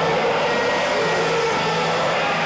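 A live rock band at full volume, dominated by a steady wall of distorted electric guitar noise with no clear separate beats, recorded through a camcorder's microphone.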